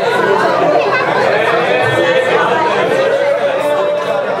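Crowd chatter: many voices talking over one another in a packed club, with no music playing.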